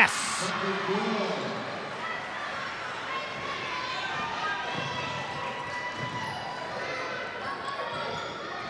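Gym sound during a basketball game: a short burst of crowd noise as a basket drops, then a basketball bouncing on the hardwood court over a steady murmur of spectators' and players' voices in the hall.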